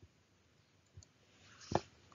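A few faint clicks: one at the start, one about a second in, and a louder one near the end.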